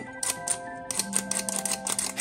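Hand-held flour sifter clicking rapidly and unevenly as it sifts powdered sugar, over background music with held notes.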